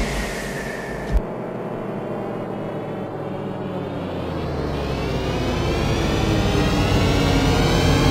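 Synthesized intro sting under an animated logo: a low drone after the preceding hit, a short thump about a second in, then a slowly rising swell of many tones with a deepening low end that builds toward the music.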